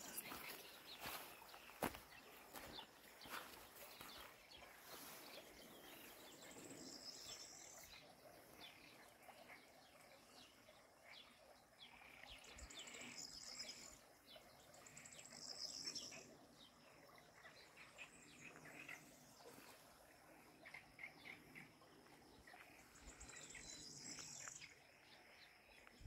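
Faint countryside ambience by a small stream: birds chirping and frogs calling, with a high trill about a second long coming back several times.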